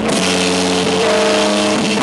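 Rock band playing live at high volume in a small room: distorted electric guitars hold sustained chords that shift about a second in, over the drum kit.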